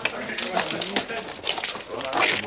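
Indistinct chatter of teenage boys' voices, with no clear words.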